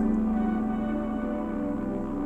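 Ambient background music: a sustained drone of steady held tones, slowly getting quieter.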